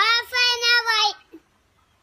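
A young boy chanting a single line of an Arabic supplication (du'a) in a high, sustained, sing-song voice, about a second long.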